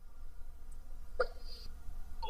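Faint steady room rumble, with one brief, short vocal sound from a man a little over a second in.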